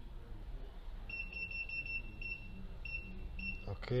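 Keypad beeps from an automotive A/C refrigerant recovery and recharge machine as its buttons are pressed to set up the charge: about ten short, high beeps of the same pitch in quick, uneven succession, starting about a second in, over a low steady hum.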